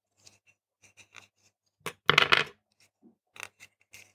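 AA batteries clicking and clinking against each other and against a plastic three-cell battery holder as they are handled and fitted. There are a few light clicks and one louder clattering scrape about two seconds in.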